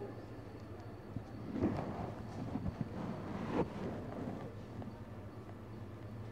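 Indoor shop ambience: a steady low hum, with a couple of seconds of indistinct rustling and light knocks in the middle.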